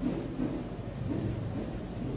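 Low, steady rumble of background noise with faint soft low sounds in it.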